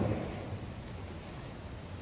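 A pause between speakers filled only by a faint, steady background hiss of room noise.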